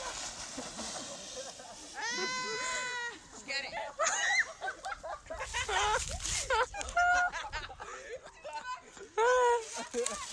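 Children shrieking and squealing in high-pitched voices without words, with one long held shriek about two seconds in and shorter squeals after it.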